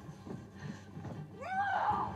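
A woman's yell near the end, rising then falling in pitch, over a background music score.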